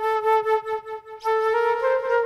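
Solo flute improvising: a run of quick, short, repeated notes on nearly one pitch, then a longer held note from a little past halfway that steps up slightly near the end.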